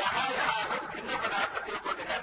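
Speech: a man talking continuously, as in a recorded spiritual discourse.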